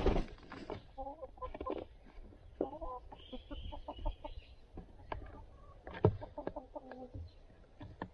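Hens clucking in short low calls close by, with scattered sharp taps, the loudest about six seconds in.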